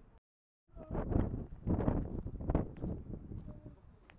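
Wind buffeting the camera's microphone: loud low rumbling gusts that surge three times, starting abruptly after a moment of dead silence near the start.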